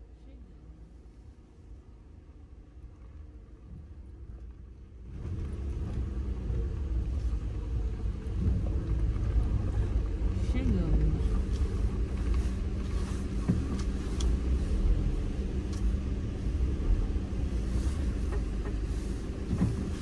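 Four-wheel-drive vehicle heard from inside the cabin, engine running at low speed with tyre and road rumble as it creeps along a snow-covered road. The rumble is faint at first and grows clearly louder about five seconds in.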